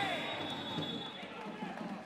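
Faint floorball arena ambience with a few light impacts from the court. A referee's whistle sounds faintly and steadily for about the first second, as play stops for a penalty.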